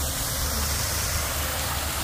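Water pouring down a tall waterfall feature and splashing into a pool: a steady, even rushing.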